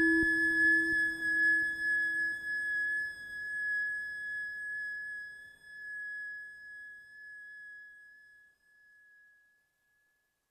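Eurorack modular synthesizer holding a final high sustained tone over a lower drone. The low drone dies away in the first three seconds, and the high tone fades out in slow swells until it is gone about nine and a half seconds in.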